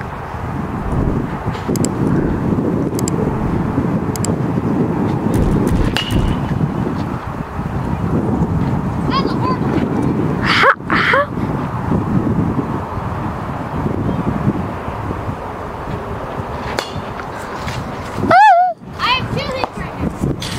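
Indistinct kids' voices over a steady low rumbling noise, with two short high-pitched yells, one about halfway through and one near the end.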